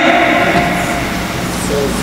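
Steady rushing background noise of a large hall, easing off slightly, with a brief voice sound just before the end.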